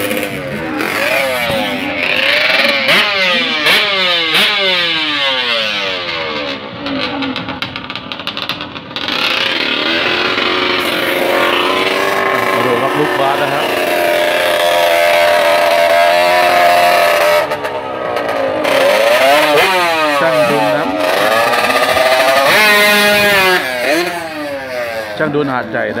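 Two-stroke reed-valve drag-racing motorcycle engine, a 67 mm piston build, revved hard in repeated rising and falling sweeps, then held at a steady high pitch. In the second half it climbs steeply in pitch several times in quick succession as it launches and pulls away, fading near the end.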